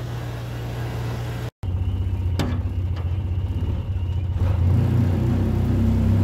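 Engine of a Ranger side-by-side utility vehicle running while it drives over rough, grassy ground, with a momentary break in the sound about a second and a half in. Near the end the engine note rises and gets louder as it pulls harder.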